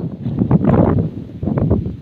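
Wind buffeting the phone's microphone in uneven gusts, a loud low rumble that swells and drops.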